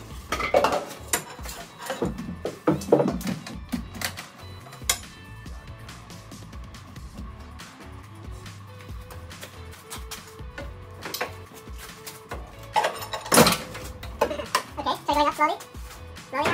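Metal tools and car parts clinking and knocking in scattered sharp clicks as bolts and components are worked on under a car.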